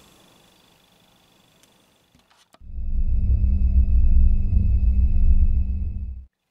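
Edited-in transition sound effect: after a click about two and a half seconds in, a loud, deep, steady rumbling drone with a faint high whine over it, cutting off suddenly at the end.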